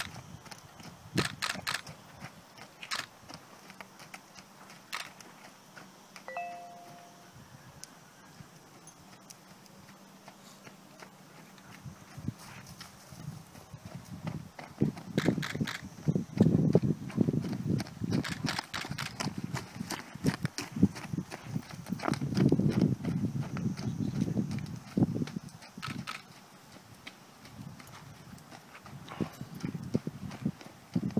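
Hoofbeats of a ridden horse moving over a sand arena, uneven thuds and clicks. They are sparse and faint at first, then come closer and louder, with heavy thumps through the middle of the stretch.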